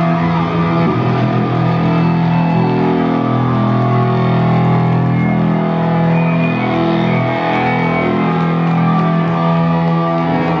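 Live electronic-rock band playing loudly, electric guitar prominent, on long held notes.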